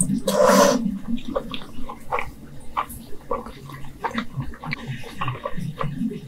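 Close-miked mouth sounds of eating black bean noodles: a loud slurp about half a second in, then wet chewing with many small lip and tongue clicks.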